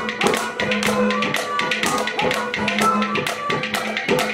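Live ragni accompaniment: fast, evenly spaced hand-drum and tapping percussion strokes, several a second, over a steady held harmonium drone.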